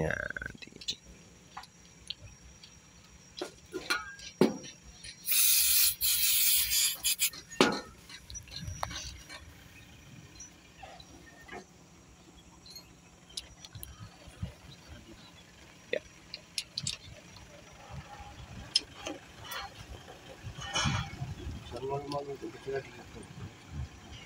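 Hand tools working the rocker-arm bolts of a diesel engine's open cylinder head: scattered metallic clicks and knocks from a socket and long extension bar. A loud rushing noise lasts about two seconds, starting about five seconds in.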